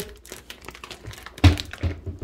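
A dull thump about one and a half seconds in, followed shortly by a lighter knock, over faint handling rustle.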